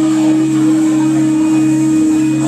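Live rock band's electric guitars and bass letting a chord ring on as a loud, steady drone that holds without change.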